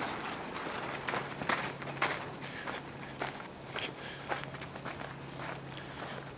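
A person walking: an uneven series of footsteps and scuffs, over a faint steady low hum.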